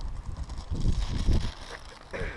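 Wind buffeting the microphone in low, irregular gusts that die down about one and a half seconds in.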